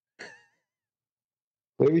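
A short, faint breathy sigh from a person's voice, gliding slightly in pitch. Then silence, until a man starts speaking near the end.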